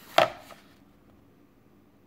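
A single sharp tap of a hand against a glossy page of a thick hardcover comic omnibus, about a fifth of a second in, dying away quickly into near silence.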